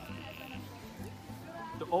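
Frogs croaking, a low call repeated several times.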